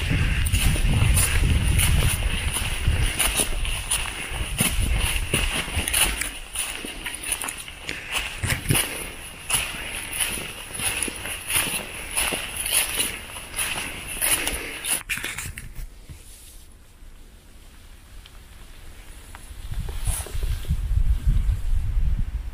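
A hiker's footsteps on a leafy forest trail, with clothing and pack rustle and wind rumbling on the microphone. The steps stop about three-quarters of the way through, leaving a quieter stretch before the wind rumble picks up again near the end.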